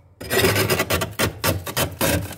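Metal spoon scraping dry, flaky freezer frost off the freezer ceiling in short scraping strokes, about three or four a second, starting a moment in.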